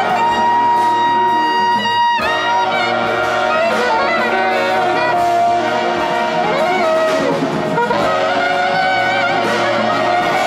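A small street horn band of saxophones and trumpets plays an instrumental jazz passage together. A high held note in the first two seconds breaks off abruptly, and several horn lines then move and weave over one another.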